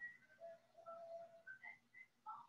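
Near silence with faint whistle-like notes at changing pitches, including one lower note held for about a second in the middle, over a faint low hum.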